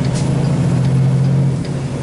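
Kenworth T680 semi truck heard from inside the cab while driving: a steady low engine drone over road noise from the wet pavement.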